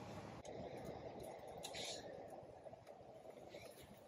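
Quiet background hiss with a few faint short clicks and rustles about halfway through and near the end, as metal cap screws are started by hand into a bike rack's tray.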